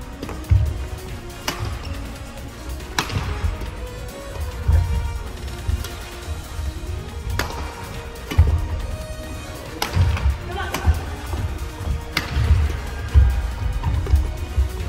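Badminton rally: about six sharp racket-on-shuttlecock hits, one every second and a half to two and a half seconds, with players' footsteps thudding on a wooden court floor. Background music plays steadily underneath.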